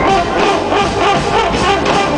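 A large live band jamming loudly, with drums, guitar, brass and bowed strings playing together.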